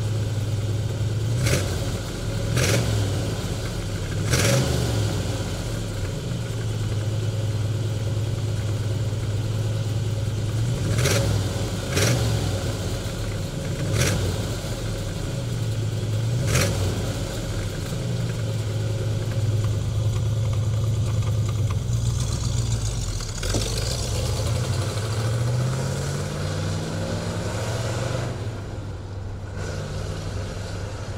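1970 Chevrolet Chevelle SS's 396 cubic inch big-block V8 idling through its exhaust, blipped up in about seven quick revs over the first half. Later the engine speed climbs more slowly, then falls back.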